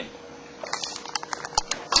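Handling noise as the recording device is moved: a short rustle followed by a string of small, irregular clicks and taps.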